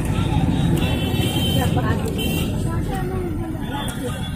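Steady low engine and road rumble of a bus heard from inside while it drives, with people's voices in the background.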